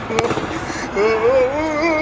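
A basketball bounces once on the court floor, then from about a second in a person sings a drawn-out, wavering note.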